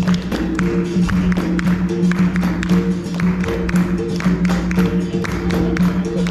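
Capoeira roda music: the circle clapping hands in a steady rhythm over an atabaque drum and a sustained pitched instrument or chant, with regular sharp beats about three to four times a second.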